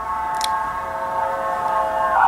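A steady pitched tone holding one note with several overtones, changing in colour about two seconds in.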